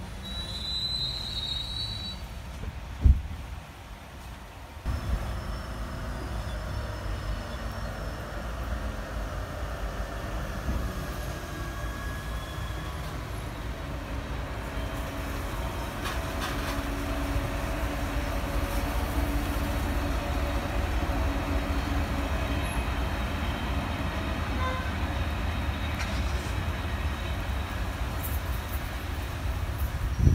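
MaK G 1206 diesel-hydraulic shunting locomotive running slowly while hauling tank wagons. Its engine is a steady low rumble that grows louder as it comes closer. A brief high wheel squeal at the start, and a single thump about three seconds in.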